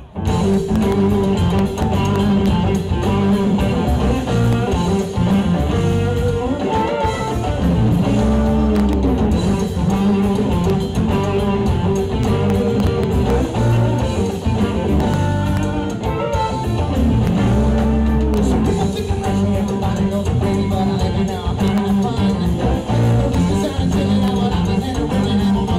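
A live blues-rock jam band playing at full volume: electric guitars, bass and drum kit, with a harmonica played into a hand-held microphone. The full band comes in at once at the start, and bending pitched lines run over the steady groove.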